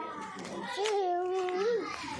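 A toddler's voice: one drawn-out babbling call starting a little under a second in, held at a steady high pitch, then lifting briefly and dropping away at its end.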